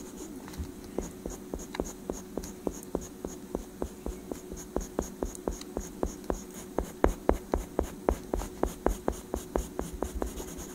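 Oil pastel rubbing on drawing paper in quick, even colouring strokes, about four to five a second, heaviest around seven seconds in.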